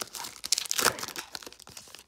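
Foil trading-card pack wrapper crinkling as it is handled and a stack of cards is pulled out of it, with the loudest crackles about half a second to a second in.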